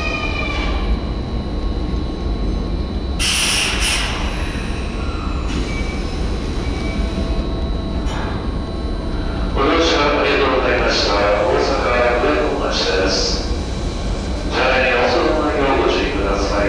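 Kintetsu 9020 series electric train rumbling as it pulls in and stops at an underground platform, with a short burst of air hiss about three seconds in. Voices over the station's echo come in during the second half.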